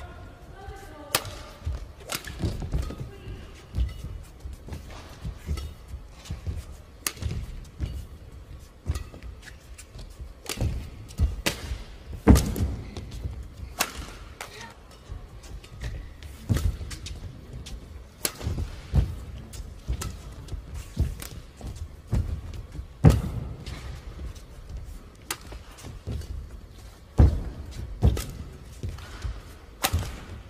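Badminton rackets striking the shuttlecock during a long rally: sharp, irregularly spaced smacks, about one to two a second, some much louder than others. Dull thuds of footwork land on the court between them.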